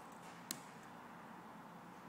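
A single sharp click about half a second in, over a faint steady hiss.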